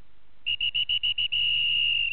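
Electronic buzzer giving a quick run of short high beeps, then one long beep: the signal that ends the game round.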